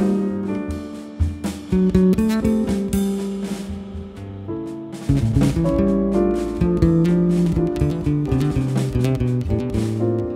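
Jazz piano trio of piano, double bass and drums playing a moderate, melodic passage. The low end thins out around three to four seconds in and fills back in about five seconds in.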